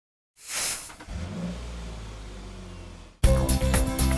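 A short whoosh, then a steady low vehicle engine rumble. Loud music with a beat cuts in suddenly near the end.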